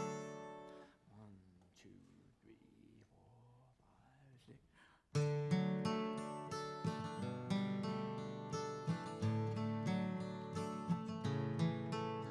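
A few quiet seconds, then about five seconds in two acoustic guitars suddenly start picking and strumming the instrumental introduction to a bluegrass gospel song.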